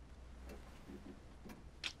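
A clock ticking faintly and evenly, about once a second. Near the end there is a short, sharp breath.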